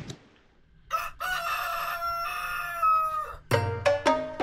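A rooster crowing once: one long call of about two seconds, falling slightly at the end. Near the end, music with a beat and percussion starts.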